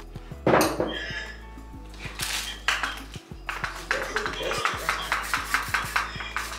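Small hard objects clinking and tapping on a countertop with some plastic rustling, a quick run of short clicks through the second half, over background music.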